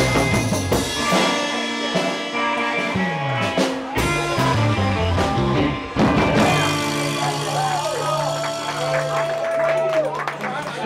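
Live surf-rock band with electric guitars, bass and drums playing an instrumental, with a note sliding down in pitch about three seconds in. From about six and a half seconds a chord is held and rings out under a wavering high guitar note.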